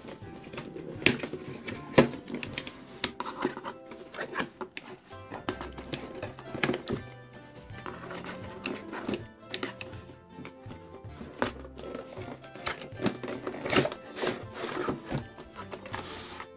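Background music with a steady stepping bass, over the scrapes, taps and clicks of a cardboard toy box being opened and its insert slid out. The sharpest clicks come about one and two seconds in.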